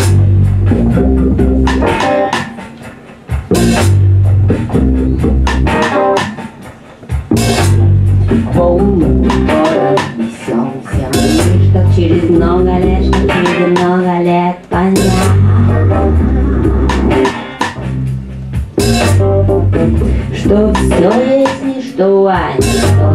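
Live band music: bass guitar and drums in a recurring heavy groove, with a woman's voice singing over it, most clearly in the middle.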